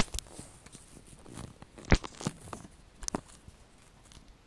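Handling noise from a handheld phone being moved about: scattered knocks and rubbing on the microphone, the loudest right at the start and another just before two seconds in, with a few smaller taps after.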